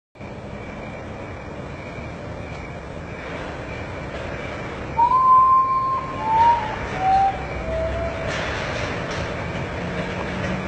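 Common potoo singing: a mournful series of four whistled notes, each lower than the one before, the first long and held, starting about halfway through. A steady hiss runs underneath.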